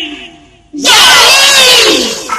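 A loud, drawn-out vocal cry bursts in about three-quarters of a second in, after a brief near-silent gap, its pitch sliding downward.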